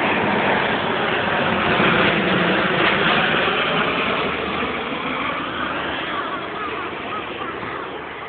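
Twin-turboprop airliner flying low overhead, its engine and propeller noise swelling to a peak a couple of seconds in and then fading away. Crows caw repeatedly over the fading noise near the end.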